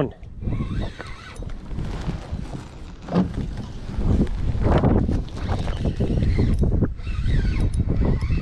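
Wind buffeting the microphone as a low, uneven rumble, with scattered rustles and knocks from fishing gear and a landing net being handled in a kayak.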